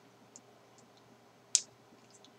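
A man swallowing beer from a glass: quiet, with a few faint clicks and one sharp mouth-and-throat click about one and a half seconds in.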